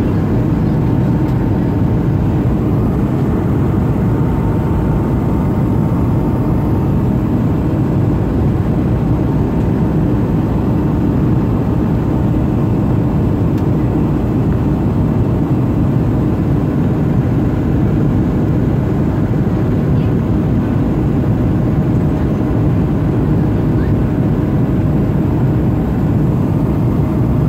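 Jet airliner cabin noise during the climb after take-off: a steady, even roar of the turbofan engines and airflow, mostly deep, with a faint steady whine running through it.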